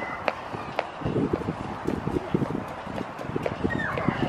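Footsteps on a concrete sidewalk: a small child's rubber rain boots and the steps of someone following, many short irregular steps.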